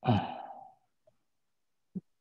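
A man's short voiced sigh, falling in pitch and breathy, lasting under a second.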